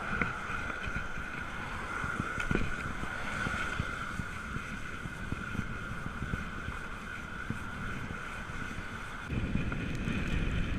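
Bicycle ride on a wet road heard from a handlebar-mounted camera: wind buffeting the microphone and tyres hissing on the wet surface, with a steady high whine throughout and a couple of bumps early on. Near the end the low rumble gets louder.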